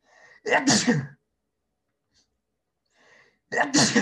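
A person sneezing twice, each sneeze preceded by a short, faint intake of breath: the first about half a second in, the second near the end.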